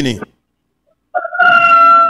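A rooster crowing once, coming through a remote caller's line after about a second of dead silence: one long held note that falls slightly in pitch.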